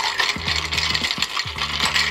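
A long metal bar spoon stirring ice in a glass mixing glass, a continuous rattle of many small clinks as the cubes turn against the glass. Low background music plays under it.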